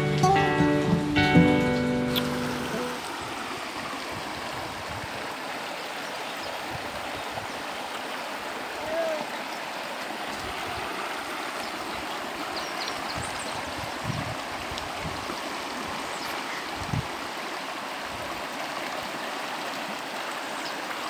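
Acoustic guitar music for the first two or three seconds, then a steady rush of flowing water.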